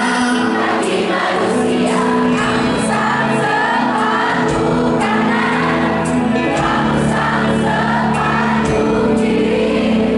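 Live pop band: male lead vocal over keyboard and acoustic guitar, with a crowd of voices singing along. Lower bass notes come in about halfway through.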